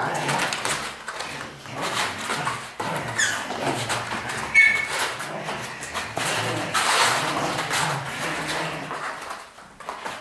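Dogs growling and scuffling as they tug at a toy in play, with a couple of brief high squeals a few seconds in.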